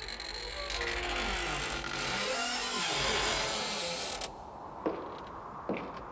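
A door creaking slowly open in a long, drawn-out creak that slides down in pitch several times over about four seconds, then stops abruptly. Two light knocks follow near the end.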